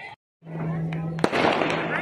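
A string of firecrackers going off in rapid, dense crackling, starting sharply just over a second in, over a steady low hum.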